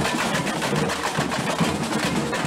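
Carnival street percussion band drumming a fast, steady rhythm of drums and wooden clacks in the middle of a crowd.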